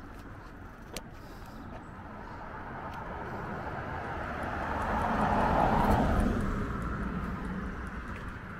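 A car passing along the street: its tyre and engine noise grows louder, peaks about six seconds in, then fades away.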